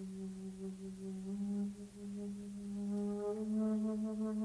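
Solo jazz flute holding a long low note with a breathy, hollow tone, then stepping up slightly in pitch about three-quarters of the way through.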